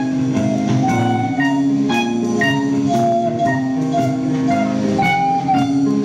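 Live indie band playing: electric guitars and keyboard over a drum kit keeping a steady beat of about two hits a second, with a melody line moving above the chords.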